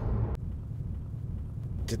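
Low, steady rumble of a car heard from inside the cabin while riding, with a faint click about a third of a second in.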